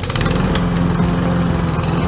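Petrol walk-behind lawn mower engine running steadily under power, a loud even hum with a dense mechanical clatter over it.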